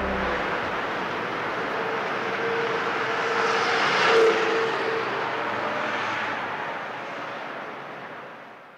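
A rushing, aircraft-like noise effect closing a pop-rock song as the band drops out. It swells to a peak about four seconds in, then fades away.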